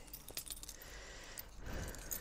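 A few faint small metal clicks over a low hum, from the locks of an aluminium carry case being worked open.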